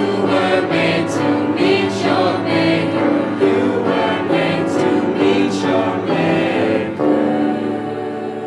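Mixed ensemble of young voices singing together in harmony, moving into a held chord about seven seconds in.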